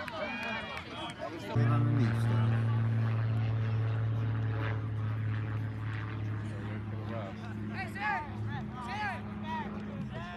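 A steady low engine hum from a passing vehicle or aircraft. It sets in abruptly about one and a half seconds in and eases off near the end, under distant voices.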